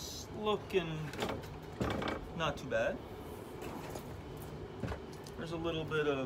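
A man's voice in short snatches, not making out words, with a couple of light knocks and a steady low hum underneath.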